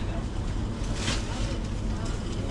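Steady background noise of a busy shop with a low hum, and one short breathy hiss about a second in.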